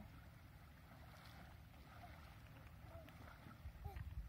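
Near silence: a faint low wind rumble on the microphone, with a brief faint voice near the end.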